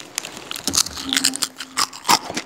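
Crunchy chips being bitten and chewed: a run of short, crisp crunches.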